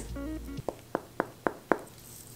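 Five quick knuckle knocks, about four a second, on a papier-mâché clay sculpture that has hardened completely: a knock test of how solid it has dried.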